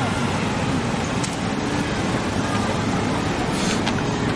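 Street traffic: motorcycles, scooters and cars passing, with their engines making a steady din. A short hiss comes near the end.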